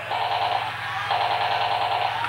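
Electronic toy sound effect: a rapid machine-gun-like rattle in two bursts with a short break about halfway, over a steady low hum.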